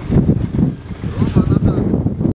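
Sidecar motorcycle engine running under load with an uneven, pulsing low rumble as the outfit is worked out of a deep snowdrift, mixed with wind buffeting the microphone.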